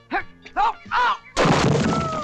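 A sudden loud crash about a second and a half in, lasting about half a second: a man falling through a branch-covered pit trap into the hole. Short exertion grunts come before it.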